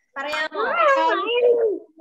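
Young children's high voices calling out "one" over one another, heard through a video call.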